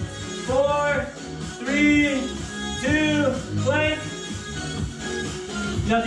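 Background music: a pitched melody in arching phrases about a second apart over a steady bass line.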